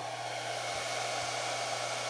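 The SkyRC T6755 charger's cooling fans whir steadily while it charges a 6S LiPo, growing slightly louder, over a low steady hum.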